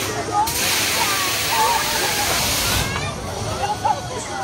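Amusement ride letting off a loud hiss of compressed air, starting abruptly about half a second in and cutting off just before three seconds, over the voices and calls of the crowd and riders.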